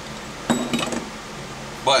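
Metal wire gauge discs clinking as they are handled and set down, a short cluster of clinks about half a second in.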